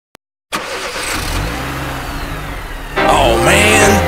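A BMW E36 3 Series saloon's engine running, with a low drone and a rushing exhaust hiss, cutting in suddenly about half a second in. About three seconds in, music comes in over it.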